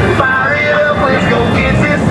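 Music with a singing voice playing loudly from an airboat's stereo system, its amplified speakers and subwoofers giving it strong bass.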